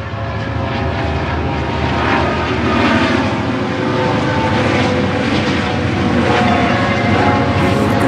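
Multirotor drone propellers whirring with a steady buzz, swelling in over the first couple of seconds.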